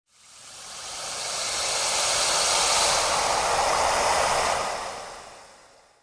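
A rushing whoosh sound effect, part of an animated logo intro: the noise swells up over the first two seconds, holds, then fades away by the end.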